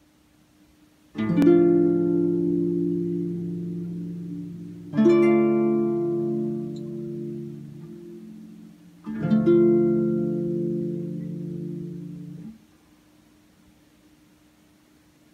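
Pedal harp plucking three slow chords about four seconds apart, each left to ring and fade. The third is damped and stops suddenly near the end.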